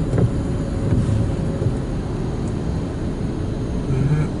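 Low, steady rumble of a car's engine and tyres on a wet motorway, heard from inside the cabin while moving slowly in queuing traffic.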